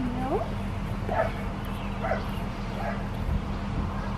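Australian Shepherd puppy whimpering and yipping: a rising whine at the start, then four short yips, over a steady low hum.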